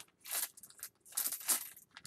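Wheat pennies clinking and sliding against each other as they are put into a plastic baggie, in two short bursts.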